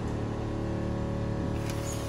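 Small electric water pump under a sink tap humming steadily, with a low, even drone. The tap is open with no water supply connected, so the pump is running dry and vibrating.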